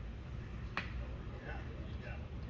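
A single sharp click a little before the middle, over a steady low rumble.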